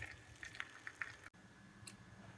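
Faint, scattered soft pops from thick carrot halwa simmering in the pan, cutting off suddenly a little past halfway.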